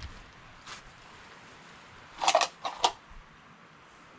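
Old wooden door being pushed open: a faint knock just before a second in, then a short cluster of two or three knocks and scrapes about two seconds in.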